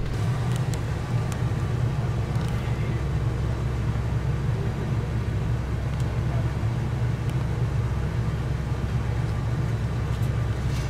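Class C motorhome's engine running steadily, heard from inside the cab as a constant low rumble.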